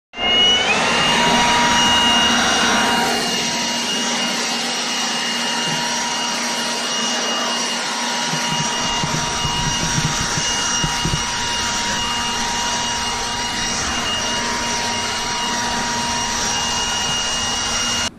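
Milwaukee cordless handheld leaf blower spinning up with a brief rising whine, then running steadily with a high electric-motor whine as it blows across concrete. It is loudest for the first few seconds and eases slightly after about three seconds.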